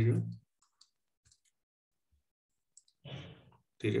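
A man's speech trails off, then there is quiet with a few faint, scattered clicks from the pen input as an equation is handwritten on the computer. A short breathy noise comes shortly before speech resumes near the end.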